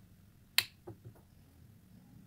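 A sharp click, followed by three fainter clicks, as a smartwatch and its round magnetic charging puck are handled and the watch is set down on the table.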